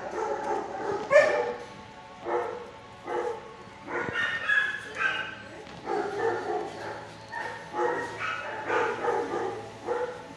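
Dogs barking and whining in a shelter kennel, a string of short pitched calls about one a second, the loudest about a second in.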